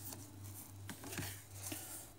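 Faint rustling and a few soft clicks as a tempered glass screen protector in its paper-and-foam packaging sleeve is handled, over a steady low hum.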